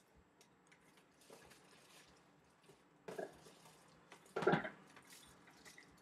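Quiet handling noise: soft rustles and small clicks of a power cord and packaging being pulled from a cardboard box, with two brief louder rustles about three and four and a half seconds in.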